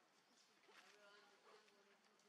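Faint buzz of a flying insect passing close, starting a little after half a second in and fading out near the end, over near-silent outdoor background.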